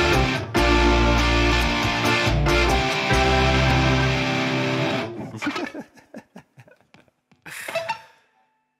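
Electric guitar playing over looped drums and bass at the close of a rock song; the backing cuts out about five seconds in, leaving a few scattered guitar notes with bends, then a short burst of sound just before the end.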